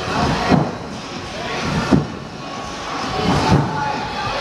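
A trampoline bed thumping three times, about a second and a half apart, as a young flipper bounces on it, over a steady background din.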